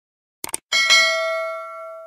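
Subscribe-animation sound effects: a couple of quick mouse clicks about half a second in, then a notification bell chime. The chime is struck twice in quick succession and rings on, slowly fading.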